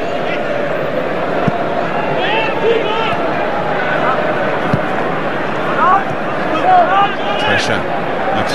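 Football stadium crowd during open play: a steady mass of spectators' voices with scattered individual shouts rising above it.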